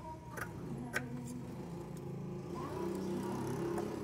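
Background music with held low notes, and two sharp snips about half a second and a second in from scissors cutting a paper pattern.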